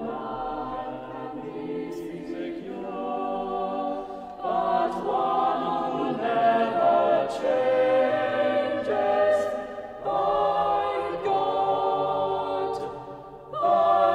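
Chapel choir singing an English church anthem in several parts. The singing is soft at first, grows louder about four seconds in, and drops briefly between phrases near the end.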